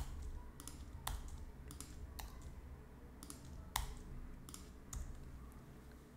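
Computer keyboard keys pressed one at a time: about ten short, sharp clicks spaced roughly half a second apart, as layers are nudged frame by frame in an editing program.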